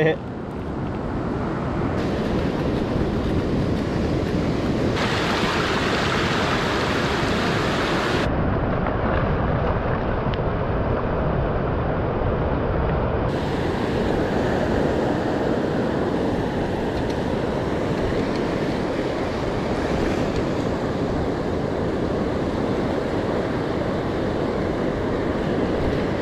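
Steady rushing of ocean surf mixed with wind buffeting the microphone at the water's edge. The tone shifts abruptly a few times.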